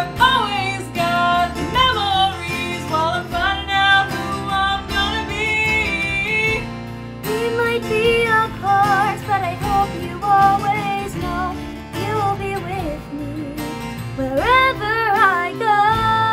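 Female voices singing a pop ballad over a strummed acoustic guitar backing, with a new singer taking over the melody about halfway through.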